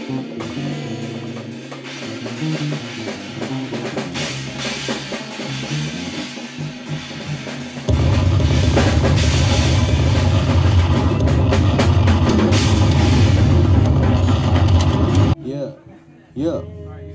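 Band music with a drum kit. About halfway through it jumps suddenly much louder, with heavy bass and drums, then cuts off abruptly near the end.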